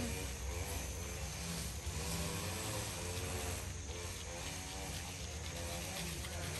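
Grass cutters (brush cutters) running: a steady engine drone whose pitch rises and falls as they rev.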